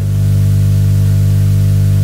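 Loud, steady electrical hum with a low buzz of overtones, unchanging in pitch and level, in the recording from a wired lapel microphone.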